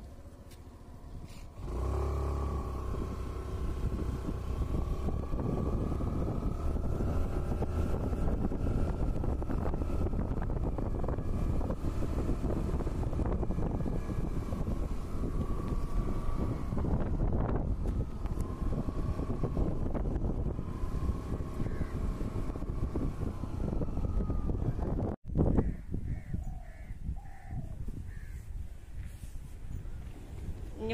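Steady engine and road rumble of a moving vehicle, with a wavering whine running through it. About 25 s in it cuts off abruptly, and the quieter sound after it carries a few short calls.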